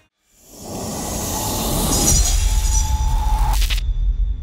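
Sound-designed outro sting for an animated logo: a rising noise swell with a shimmering high edge builds for about three seconds and cuts off sharply near the end, leaving a deep bass rumble underneath.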